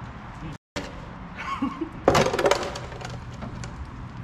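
Small hard debris clattering in a pickup truck's bed as it is cleared out: a brief burst of rapid clinks and knocks about two seconds in.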